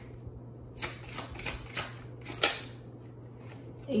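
Tarot cards being shuffled: a run of quick papery flicks and slaps over about two seconds, starting about a second in, before the cards for the spread are drawn.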